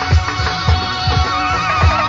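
Live go-go band music: irregular low drum hits, with a held, wavering high note coming in about halfway through.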